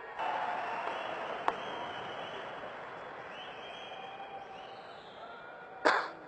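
Audience applause that breaks out right after a punchline and slowly dies away, with a sharp click about a second and a half in.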